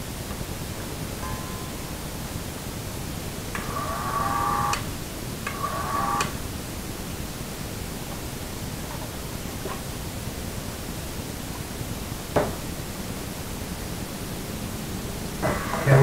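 Steady background hiss, with two short pitched sounds about four and five and a half seconds in and a single sharp knock near the end.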